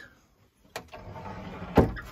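A closet door sliding open: a click, about a second of scraping as it runs, then a loud knock as it stops near the end.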